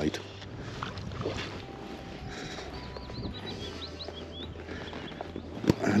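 Steady low wind and lapping lake water at the shore, with a quick run of faint high chirps about halfway through.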